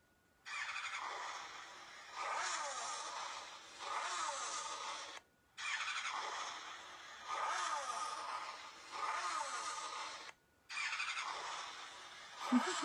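Looping sound track of an augmented-reality coloring app, played through a smartphone's small speaker. A phrase of about five seconds, full of repeated falling glides, plays and then starts over after a brief silence, twice.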